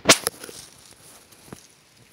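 A sharp crack right at the start, followed at once by a second, smaller one, then a single faint click about a second and a half in, over a quiet background.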